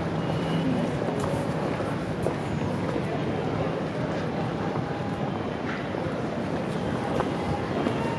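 Steady city street ambience: a low, even rumble of the surrounding city, with faint voices of passers-by and a few small clicks.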